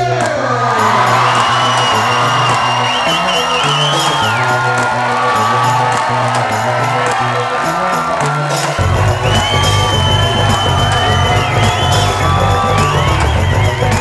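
Upbeat walk-on music with a stepping bass line, under an audience cheering and clapping; the bass grows heavier about nine seconds in.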